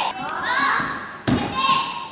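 Children's voices calling out, and a little over a second in a single sharp thud from a gymnast's vault: the springboard take-off and hands striking the vaulting table.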